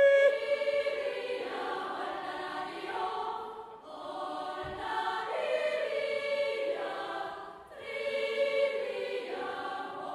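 Choir recording played back, the choir singing sustained chords in three phrases that each swell and fade.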